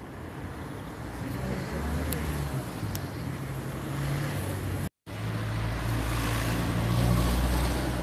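Outdoor street ambience: a steady low rumble that slowly grows louder, cut by a brief total dropout of sound about five seconds in.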